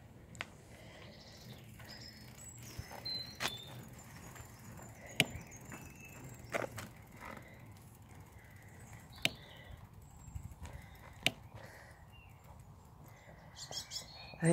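Bicycle rolling along a tarmac path, a quiet low rumble of tyres, with half a dozen sharp clicks and knocks spaced a second or two apart.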